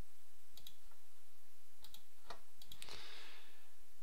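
Computer mouse clicking, about six short, sharp clicks spread over a few seconds, with a faint steady low hum underneath.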